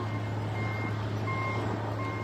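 A vehicle's reversing alarm beeping faintly and repeatedly, over a steady low hum.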